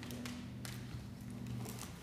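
A few light taps over a low, steady hum that cuts off near the end.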